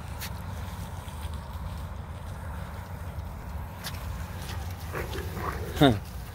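A few short dog barks in the last second over a low, steady rumble; the last and loudest bark falls sharply in pitch.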